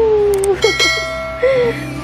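A bright bell-like chime struck about half a second in, ringing with several clear tones at once and slowly fading, over a low steady music bed.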